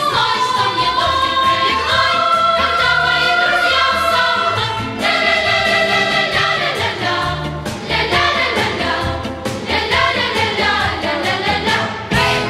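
Music: a song with a sung melody over instrumental accompaniment, playing steadily throughout.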